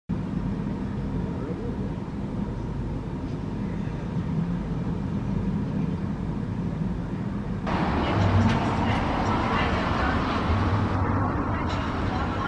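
Outdoor city ambience: a steady low rumble of traffic. About eight seconds in it turns suddenly louder and fuller, with people's voices mixed in.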